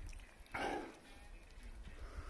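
A short, soft breathy exhale from a man tasting a sip of watermelon hard seltzer, about half a second in, over a faint low rumble.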